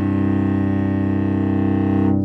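Cello's open C and G strings bowed together in one long, steady double stop, a fifth played to check the tuning; the fifth is fairly in tune.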